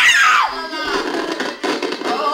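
A short, high shriek that rises and falls in pitch over about half a second, followed by a jumbled noisy commotion, with a karaoke backing track faintly underneath.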